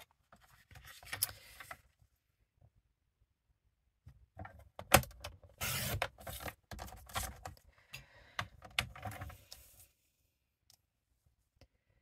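Cardstock being slid and lined up on a paper trimmer: paper rustling and scraping against the trimmer's board and clear cutting arm, with sharp plastic clicks. A brief burst, a pause, then several seconds of handling with one sharp click standing out.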